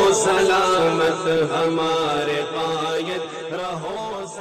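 A devotional nasheed-style vocal chant in Urdu, with held notes and pitch that slides up and down over a steady low drone, gradually getting quieter.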